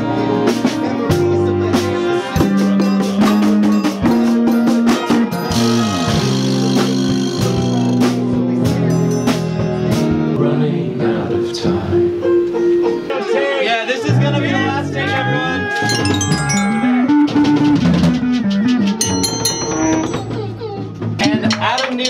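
A live band plays electric bass, drum kit and keyboards, with frequent drum hits under busy pitched lines and sliding pitch bends about two-thirds of the way through.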